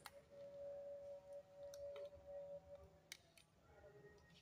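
Near silence, with a few faint clicks of a banana-plug jumper lead being pushed into the sockets on an electric motor's terminal board, over a faint steady tone.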